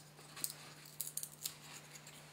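Faint, crisp clicks and crackles, a handful of them between about half a second and a second and a half in, as thin sheets of gypsum are split apart along the crystal's perfect cleavage plane with a knife blade.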